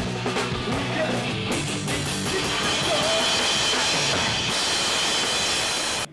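Loud rock music driven by a drum kit, with guitar, cutting off suddenly at the end.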